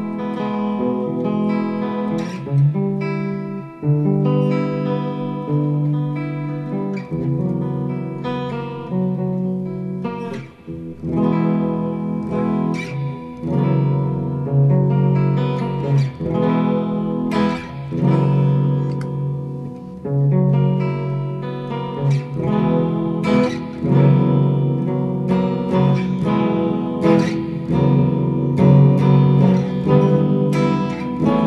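Clean electric guitar, an Electra, played through a Korg AX1G multi-effects pedal set to chorus. Chords and picked single notes ring on continuously, with frequent pick attacks.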